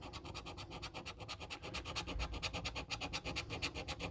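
A coin scratching the coating off a lottery scratch card in rapid, even back-and-forth strokes, several a second.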